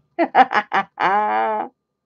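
A woman laughing: a few quick voiced bursts, then one longer drawn-out note.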